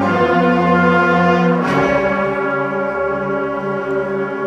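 Middle school concert band playing sustained full chords, with the brass prominent. About a second and a half in, the chord changes on a sharp accent that stands out across the range.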